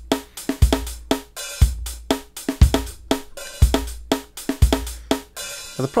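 A sampled drum kit played back from the Xpand!2 virtual instrument: a programmed beat with a kick drum about once a second, with snare and a busy hi-hat pattern between the kicks.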